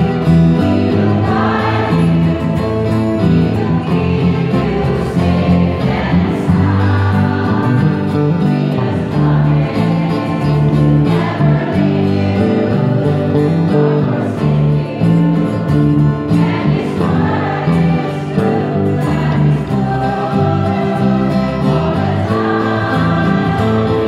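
Choir singing a gospel song, accompanied by strummed acoustic guitars and an electric bass guitar.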